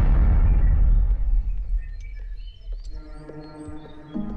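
Film soundtrack: a loud low rumbling boom dies away over the first two seconds. Then faint chirps come in, and about three seconds in soft music with long held notes begins.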